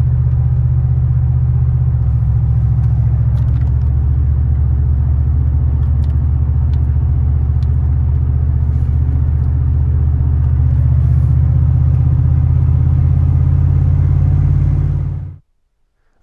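Big-block V8 of a GMT400 K2500 Suburban at a steady highway cruise, a constant low drone with road rumble heard from inside the cab. It cuts off about a second before the end.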